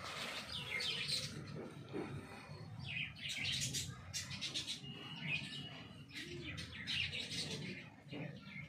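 Birds chirping: short, high, downward-sliding chirps that come in quick clusters every second or so.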